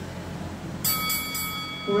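Boxing timer's round bell rung three times in quick succession about a second in, the ringing carrying on. It signals the start of the first round.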